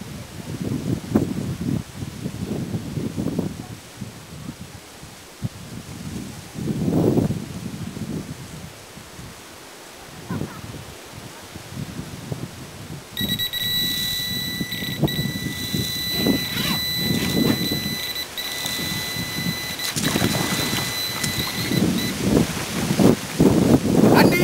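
Electronic carp bite alarm on the rod pod giving a continuous high-pitched tone for about nine seconds, starting about halfway through: a run, a fish taking line fast. Wind buffets the microphone throughout.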